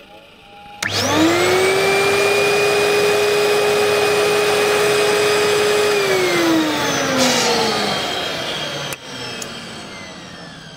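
Record cleaning machine's vacuum motor switched on, whining up to a steady pitch and holding it for about five seconds as it sucks the cleaning fluid off the record in one pass. It is then switched off and winds down with a falling whine, and a few clicks follow near the end.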